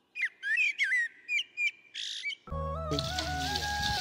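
Bird calls, a run of short whistled chirps that glide up and down in pitch. About halfway through, background music with a steady bass line comes in.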